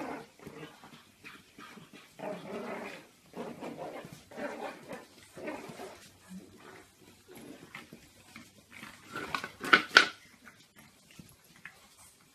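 Pug puppies play-fighting, making short growls and yips in irregular bursts. The loudest moment is a quick pair of sharp yelps about ten seconds in.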